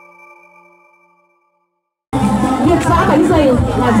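The last tones of an intro jingle ring on and fade out over the first second and a half, then a short gap of silence. About two seconds in, a loud field recording cuts in suddenly: voices over crowd chatter.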